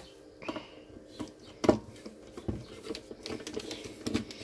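Scattered light clicks and taps of hands handling a plastic-cased solar charge controller and tools on a workbench, with a sharper knock about one and a half seconds in.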